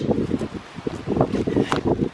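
Thick clear plastic of a deflated zorb ball crinkling and crackling in sharp bursts as it is unrolled and pulled open on grass. Wind rumbles on the microphone throughout.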